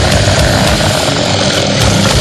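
Extreme metal music: a dense, loud wall of heavily distorted guitars over fast, pounding drums, with no break or change.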